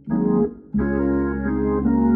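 Hammond organ playing hymn chords: a short chord, a brief break, then a held chord over a low bass note from about three quarters of a second in, moving to a new chord near the end.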